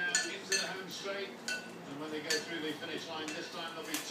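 African grey parrot splashing in her bath dish: a busy run of clinks, knocks and splashes from the dish, mixed with short chirps and squeaky vocal sounds from the bird.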